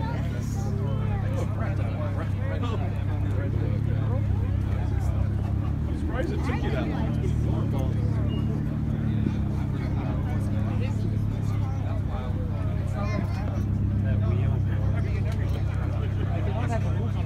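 Crowd chatter from several people talking, over the steady low hum of an idling car engine.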